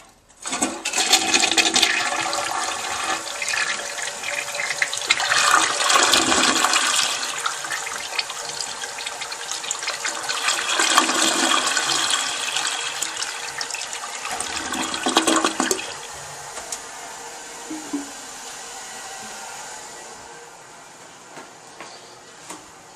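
An American Standard Plebe toilet flushing: loud rushing water that swells in several surges, then settles to a quieter steady hiss that fades near the end.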